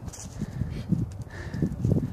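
Irregular low rumbling and soft thumps on a handheld camera's microphone, with a few faint clicks.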